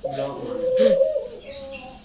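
A pet dove cooing: a low, wavering coo that carries on for most of the two seconds and fades toward the end.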